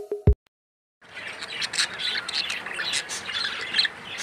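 Budgerigars chattering in a dense run of short high chirps and squawks, starting about a second in after the last beat of a music track and a brief silence.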